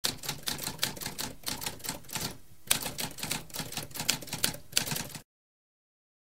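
Typewriter keys clacking in quick strokes, about five a second, with a short pause about two and a half seconds in followed by a sharper strike; it cuts off suddenly a little after five seconds.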